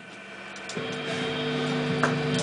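Electric guitar through a Marshall amp after the band has stopped dead: a few faint clicks over amp hum, then a held guitar note or chord rings in about a second in and slowly swells.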